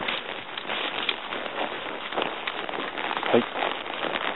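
Irregular crackling and rustling of dry grass, fallen leaves and dead twigs being trodden on.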